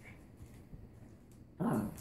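A small terrier gives one short, low vocal grumble near the end, after a quiet stretch: a grumpy warning at someone reaching toward it.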